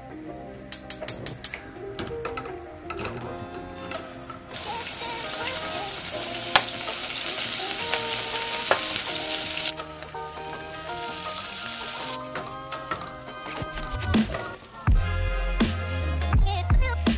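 Sliced onions sizzling as they fry in hot oil in a pot, a loud even hiss lasting about five seconds in the middle, with background music throughout. A short run of sharp clicks comes about a second in, and a heavy bass beat in the music starts near the end.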